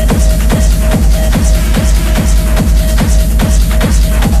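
Techno music: a steady kick drum, a little over two beats a second, under ticking hi-hats and a held synth tone.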